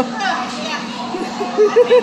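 Children's voices chattering and calling out, with a few short, loud, high-pitched calls near the end.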